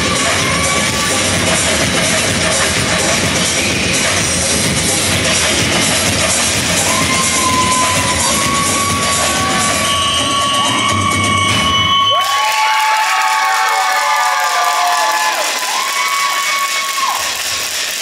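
Samba music playing loud, with an audience cheering and whooping over it from about seven seconds in; the music cuts off abruptly about two-thirds of the way through, leaving high-pitched cheers and whoops that die down near the end.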